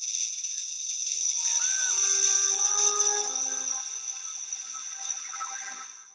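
Film soundtrack: a steady, airy high hiss, joined about a second in by soft sustained music tones, all fading out at the very end.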